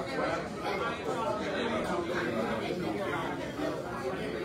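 Overlapping chatter of many people talking at once in a large hall, with no single voice standing out.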